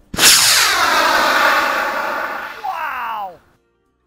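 Homemade sugar rocket motor (potassium nitrate, sugar and corn syrup propellant) igniting suddenly and burning with a loud rushing roar, its pitch sweeping downward as the rocket lifts off. The roar stops abruptly after about three and a half seconds.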